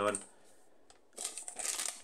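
A brief crinkling rustle close to the microphone, starting a little over a second in and lasting under a second, after a short lull.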